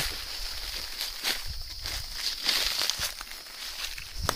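Footsteps crunching and rustling through dry leaf litter on a forest floor, in irregular steps, over a steady high-pitched insect drone.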